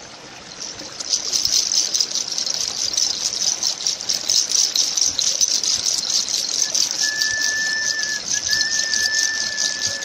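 Rushing stream water: a steady high hiss that swells about a second in. A thin, steady whistling tone joins about seven seconds in.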